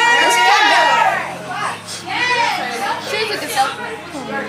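Several children's voices talking and calling out over one another, with one voice held on a long note during the first second.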